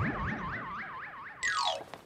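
A warbling, alarm-like electronic tone, each note rising in pitch about three times a second and slowly fading. Near the end it gives way to a quick whistle that falls steeply in pitch.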